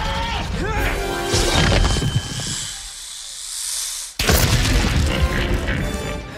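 Film soundtrack of orchestral score with rock-crash sound effects. A rising hiss grows about two to four seconds in, cuts off suddenly, and gives way to a loud crash and boom.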